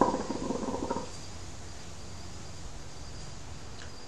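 Hookah water bubbling as smoke is drawn through it, stopping about a second in. After that only a faint steady background hiss with a thin high tone remains.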